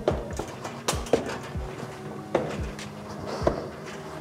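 A wooden conditioning post wrapped in rope being lowered and repositioned on a steel gym rack, giving a series of irregular knocks and clunks.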